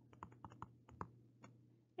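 Faint, light clicks and taps of a stylus on a tablet screen while a word is handwritten, about a dozen in the first second and a half.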